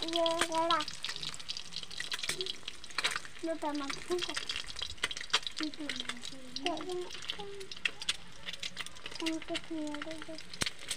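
Whole boiled eggs sizzling in hot oil in a metal kadhai, with repeated clicks and scrapes of a flat metal spatula against the pan as the eggs are turned.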